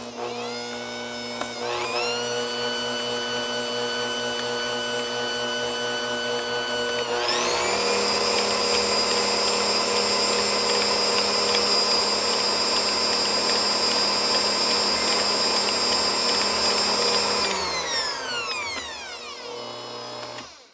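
Motor of a 400-watt Bosch Compact Kitchen Machine beating eggs and vanilla into creamed butter and sugar. It runs at a steady whine, steps up to a higher speed about seven seconds in, then winds down and stops near the end.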